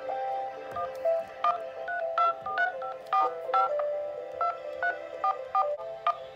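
Phone in-call keypad tones (DTMF) as digits are pressed during a call: a quick run of short two-tone beeps, two or three a second, starting about a second in, over background music.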